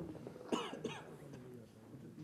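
A person coughing, two short coughs about a third of a second apart, over a low murmur of voices in the hall.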